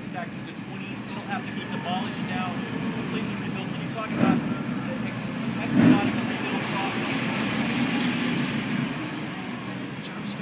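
Indistinct speech from someone away from the microphone, over steady street traffic noise. Two short knocks come about four and six seconds in.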